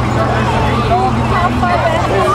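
Steady low engine hum of a large bus rolling slowly past, under the overlapping chatter of the crowd along the street.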